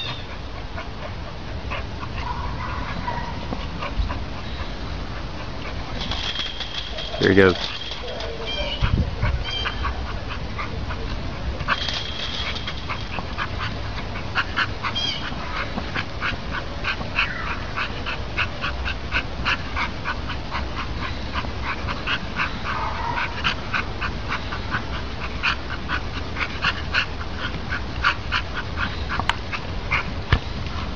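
A dog playing with a basketball in a dirt pen: its scuffling and a steady run of quick clicks fill the second half, over a low rumble. A man's voice says 'There you go' about seven seconds in, the loudest moment, and short high chirps come around six and twelve seconds.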